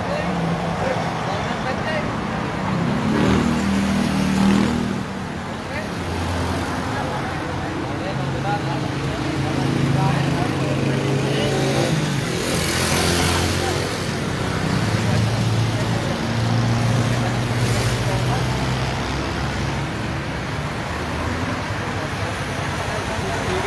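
Vehicle engines running in a road motorcade, their hum shifting in pitch every few seconds, with voices mixed in. A louder rush of noise comes a little past halfway.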